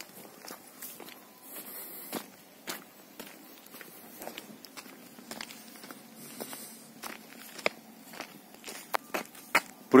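Footsteps of a person walking on grass and a dirt track, a quiet series of soft steps at a walking pace.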